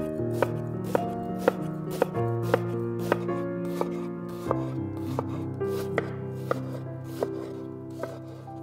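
Chef's knife chopping a shallot on a wooden cutting board: sharp knocks of the blade on the board, about two a second, with soft background music underneath.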